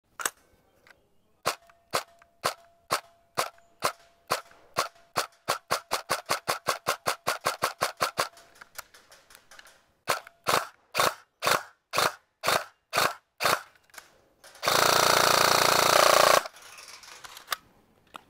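G&G TGM R5 ETU airsoft electric gun firing. At first it fires single shots about half a second apart, then a quicker run of about four a second. After a short pause come more single shots, then one rapid full-auto burst of under two seconds, the loudest event, and a last single shot near the end.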